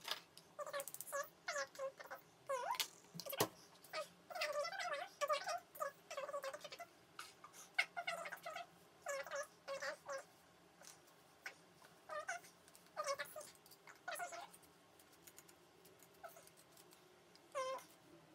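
A cat meowing again and again in short, high calls, thinning out near the end.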